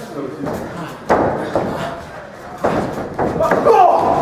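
Two sudden loud thuds of wrestlers' impacts in a wrestling ring, about a second and a half apart.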